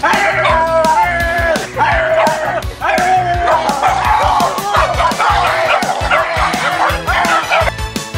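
Background music playing over a small dog barking and yipping.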